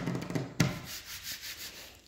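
A hand rubbing across a wood-grain desktop, with a sharp tap about half a second in; the rubbing fades toward the end.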